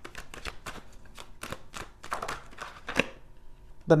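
Tarot deck being shuffled by hand: a quick run of crisp card clicks and slaps, about three or four a second, with soft rustling between them.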